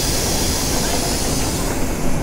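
Electric commuter train at a station platform, heard from the doors inside the carriage: a steady rumble with a strong hiss over it.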